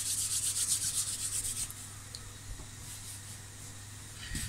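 Hands rolling a piece of fresh pasta dough back and forth on a floured worktop to shape it into a sausage: a quick, even rubbing rhythm of several strokes a second that stops a little under two seconds in.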